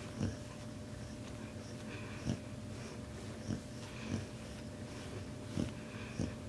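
Quiet swishing of a wide-toothed metal comb being worked through a Samoyed's thick double coat, with the dog's soft breathing and a few soft knocks.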